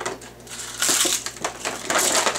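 A person chewing and crunching food loudly, in irregular bursts.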